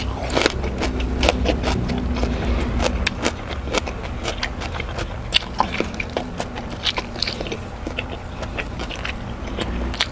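Close-miked eating: crisp crunches as a raw cucumber spear is bitten and chewed in the first second or so, then a string of wet mouth clicks and chewing sounds as eating goes on.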